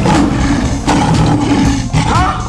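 Lion roaring twice, each a loud, rough roar of about a second.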